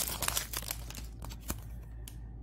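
Foil trading-card pack wrapper crinkling with light crackles as it is pulled open off the cards, with one sharper click about one and a half seconds in.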